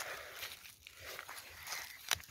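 Faint scraping and rustling of gloved hands pushing dry, stony garden soil in around a buried plastic container.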